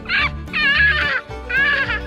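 A toddler squealing excitedly in three high-pitched, wavering bursts over background music.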